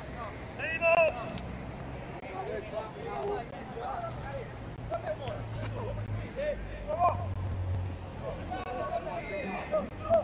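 Footballers' shouts and calls during play, with one louder shout about a second in, over a low steady background hum.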